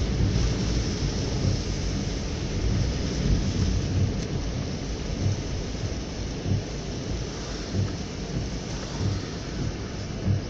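Steady rumble and hiss inside a moving car's cabin on a rainy day: tyres on a wet road and rain on the car, with soft low thumps every second or so.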